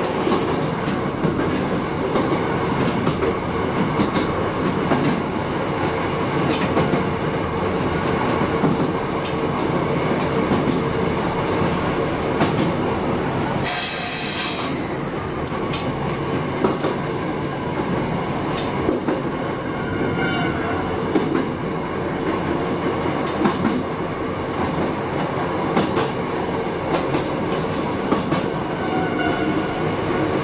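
Shin-Keisei 8000 series electric train running, heard from the driver's cab: a steady rumble of wheels on rail with frequent rail-joint clicks and a constant hum. About fourteen seconds in there is a short, sharp, high hiss.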